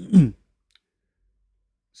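A man's spoken word trailing off with a falling voice, then a pause of near silence broken by one faint, short click.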